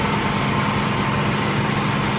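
A motor running with a steady, unchanging hum: a low drone with a fainter higher tone above it.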